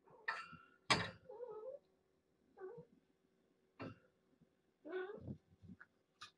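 Cat meowing in short, wavering calls, about four times, with two sharp knocks, the louder one about a second in.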